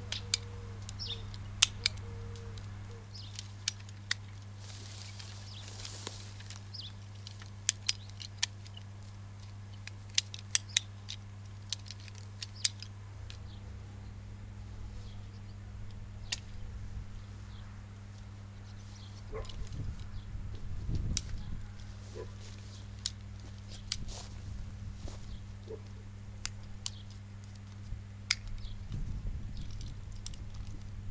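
Hand pruning shears snipping branches: scattered sharp clicks and snaps, some in a quick run of several, over a steady low hum.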